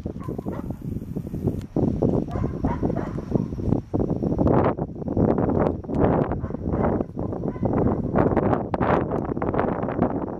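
Wind buffeting the microphone in uneven gusts, with sharp clicks of a horse's hooves and a person's footfalls on frozen ground, more of them in the second half as the horse trots on the lead.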